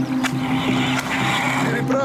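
Steady low drone of approaching tank engines, with a short rasping whir in the middle and a couple of clicks.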